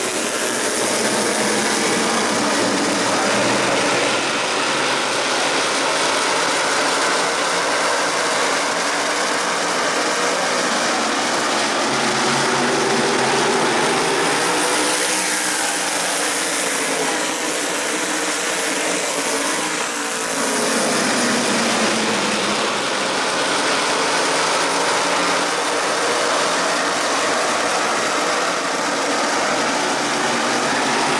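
A field of Tour-type modified race cars running at racing speed on a short oval, their V8 engines blending into a steady din. The pitch sweeps up and down as cars pass, most plainly a little past halfway through.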